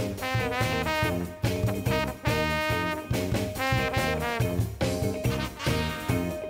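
A brass band playing a lively jazz number: trombone, trumpets and saxophone over a drum kit, with short sliding brass phrases and a steady drum beat.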